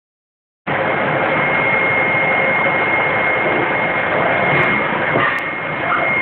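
Flat screen printing machine running: a steady mechanical noise with a constant high whine, starting just under a second in, with a couple of light clicks near the end.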